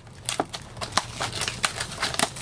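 Cellophane shrink wrap on a cardboard trading-card box being peeled and crumpled by hand, crinkling with many quick, irregular crackles.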